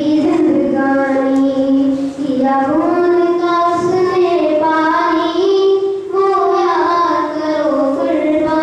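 A boy singing a slow song solo into a handheld microphone, one voice holding long notes that slide gently between pitches, with short breaks for breath.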